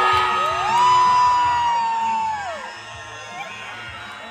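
A person's long, high "woo" cheer rises about half a second in, holds for about two seconds and falls away, over crowd cheering and music with a steady beat.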